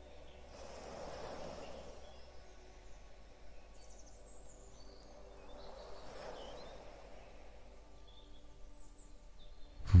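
Soft sea waves washing in and drawing back, two slow swells a few seconds apart, with faint scattered birdsong chirps over them.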